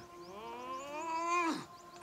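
A single long, drawn-out cry from the trailer's soundtrack. It rises steadily in pitch for over a second, then falls away sharply.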